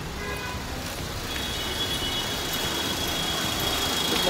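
Steady road-traffic noise, with a thin, steady high-pitched whine joining about a second in.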